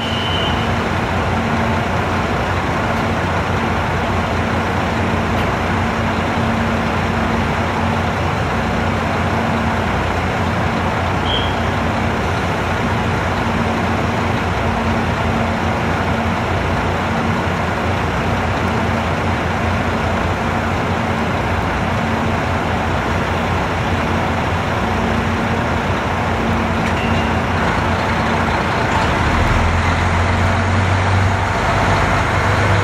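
KiHa 183 series diesel multiple unit standing at the platform with its diesel engines idling, a steady low hum. Its engine note swells near the end as it powers up, and a brief high beep sounds about eleven seconds in.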